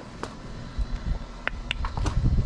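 A ridden horse walking on a dirt yard: a low rumble of movement with a few sharp clicks, the loudest two close together about one and a half seconds in.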